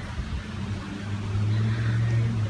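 A steady low engine hum, growing louder about a second in and then holding.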